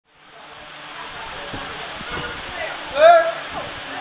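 Steady rushing hiss of a roller coaster loading station, fading in from silence, with faint voices and a short, loud voice call about three seconds in.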